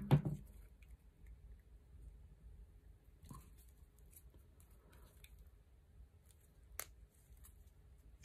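Faint handling sounds of stripped electrical cable and plastic socket parts: scattered soft rustles and small clicks, with one sharp click about seven seconds in.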